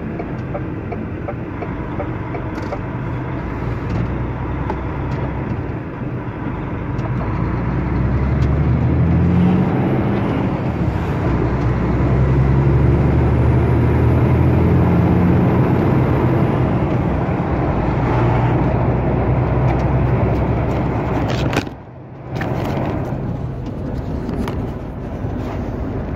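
Engine and road noise inside a lorry's cab while driving, growing louder as the vehicle builds speed. Near the end the engine sound drops away briefly, then picks up again.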